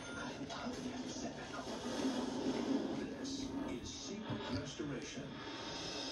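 Television audio heard through the room: background music with indistinct voices from the show's soundtrack.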